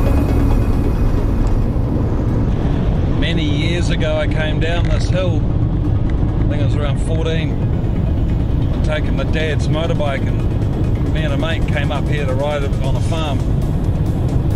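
Steady low rumble of a van's engine and tyres heard from inside the cab while driving, with a man talking over it in short stretches from about three seconds in.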